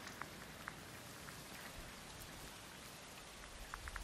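Rain falling steadily, a soft even hiss with scattered individual drops plinking over it.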